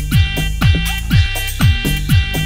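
Instrumental passage of a 1992 house track. A steady four-on-the-floor kick drum hits about twice a second under a sustained synth chord.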